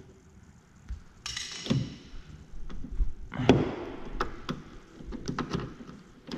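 Hard plastic and metal clicks, knocks and scrapes from a 2005 Volkswagen Beetle's exterior door handle and lock cylinder being pushed and worked loose from the door by hand. A scraping rush comes about a second in, a louder scrape about three and a half seconds in, then a run of sharp clicks.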